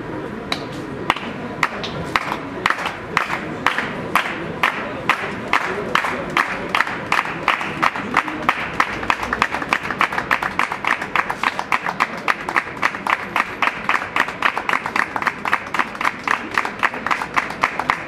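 A group of people clapping in unison, starting with a few slow claps and quickening to a steady beat of about three claps a second, with the group's voices underneath.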